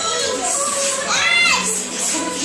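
A young child's high voice calling out, one rising-and-falling call about a second in, over a song with singing playing in the background.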